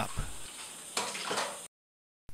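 Tap water running in a thin stream into a plastic cup and trickling into a stainless steel sink, a steady hiss that cuts off suddenly near the end.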